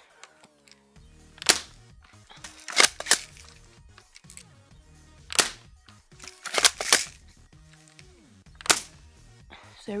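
Mossberg spring airsoft pump shotgun firing, shot by shot: seven sharp clacks in all. A single crack comes about every four seconds, and a quick double clack falls between each pair of shots, as the pump is racked.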